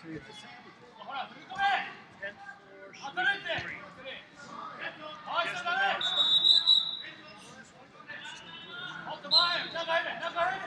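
Voices of people calling out in a large hall, with two short, high, steady whistle blasts: one about six seconds in and one near the end, typical of a referee's whistle at a wrestling tournament.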